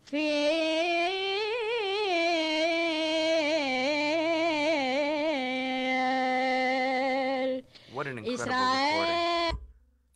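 A woman singing a Judeo-Spanish compla for Shavuot unaccompanied, with heavy ornamentation: one long melismatic phrase with wavering pitch, a brief break, then a shorter closing phrase that ends just before the end.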